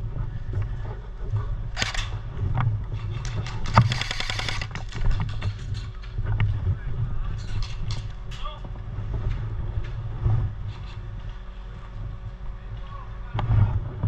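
Airsoft guns firing in rapid bursts of sharp clicks, the longest burst lasting under two seconds, over a steady low rumble.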